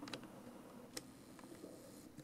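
Near silence: quiet room tone with one short faint click about a second in.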